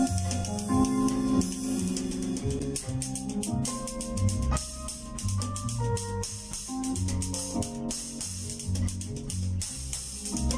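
Drum kit played along to a smooth jazz backing track without drums, with sustained guitar and keyboard notes and a bass line. The kit's perforated low-volume cymbals and drums add frequent light hits over the top.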